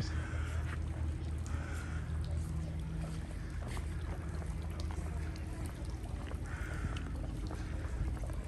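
Outdoor ambience: a steady low rumble with the faint voices of people in the distance.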